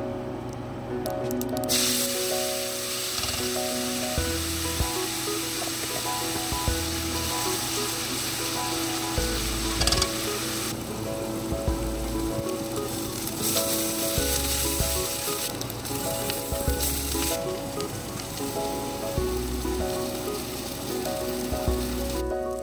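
Spices and chopped onions frying in hot oil in a pot, sizzling loudly from about two seconds in. The sizzle drops back about halfway through, then returns for a few seconds, over soft background music with a melody.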